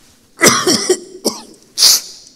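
A man coughing at close range into a lectern microphone, hand over his mouth: a long cough about half a second in, a short one after it, and another sharp cough near the end.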